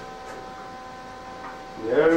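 Steady electrical hum made of several high, even tones over faint hiss. A man's voice starts just before the end.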